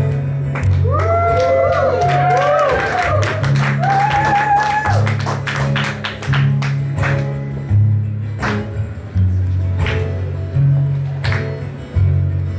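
Live acoustic guitar playing an instrumental intro: strummed chords over a low bass line that alternates between two notes. Short gliding, voice-like whoops rise over it in the first few seconds.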